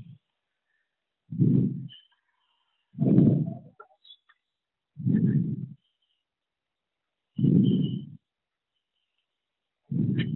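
Multigraf 252 pile stacker running hand-fed sheets: four short mechanical bursts of noise about every two seconds, each with a faint squeak, as each sheet goes through.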